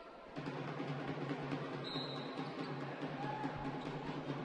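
Basketball arena ambience: a steady murmur of the crowd and hall with music playing faintly, and a short high tone about two seconds in.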